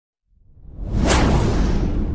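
Whoosh sound effect for an intro title card: a rush of noise swells out of silence, peaks about a second in, then trails off slowly over a deep low rumble.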